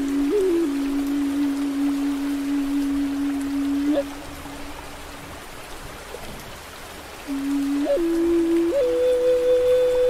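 Native American flute playing slow, long-held low notes with short grace-note flourishes over a steady hiss of rain and falling water. About four seconds in, the flute rests for some three seconds, leaving only the rain, then comes back and steps up to a higher held note.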